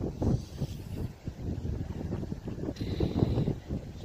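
Strong gusty wind buffeting the microphone: an uneven low rumble that swells and drops with the gusts.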